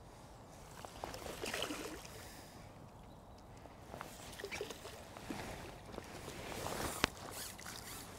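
Faint, irregular water splashing and rustling as a hooked F1 carp is played in on a pole and drawn into a landing net, with one sharp click about seven seconds in.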